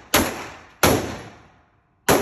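Two pistol shots from a Canik handgun fired one-handed, about 0.7 s apart, each a sharp crack followed by a long echoing tail in the indoor range.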